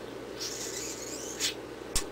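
Quiet room tone with a soft breathy hiss lasting about a second, then two short mouth clicks, the second sharper, near the end: a speaker breathing and clicking her tongue while pausing to think.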